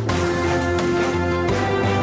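Theme music of a TV programme's opening titles: electronic music with held synth chords, a steady beat and a deep bass, changing chord about one and a half seconds in.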